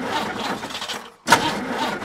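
Cartoon car engine cranking and failing to start, in two attempts with a short break between them.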